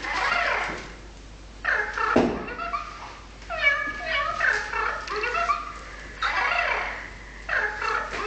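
A pet animal crying out in a run of short, bending, whining calls, in bursts of about a second with brief pauses between them.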